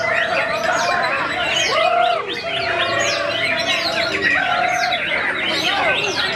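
Dense chorus of many caged songbirds, white-rumped shamas (murai batu) among them, singing at once: overlapping whistles and rapid up-and-down sweeps, with several low buzzy trills about a second long running underneath.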